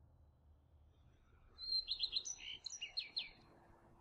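A bird chirping: a short run of quick, high chirps and whistles, starting about a second and a half in and lasting under two seconds.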